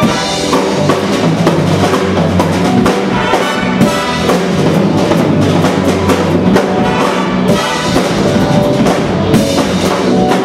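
A big jazz band playing live: horn section of trumpets, trombones and saxophones over a drum kit groove, steady and loud.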